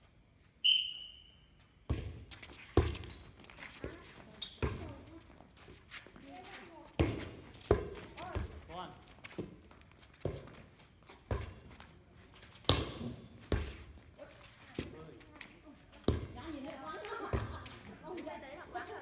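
Players' hands and forearms striking a light air volleyball during a rally: sharp slaps roughly every second, about a dozen in all, with voices calling between hits. A short high whistle sounds just under a second in.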